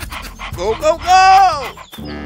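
A dog's voice: two short yelps, then one longer whining call about a second in that holds its pitch and falls away at the end.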